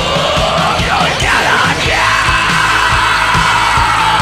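Hard rock music: a steady drumbeat under a high wailing lead line that slides up and down, then holds one long note that slowly sinks in pitch.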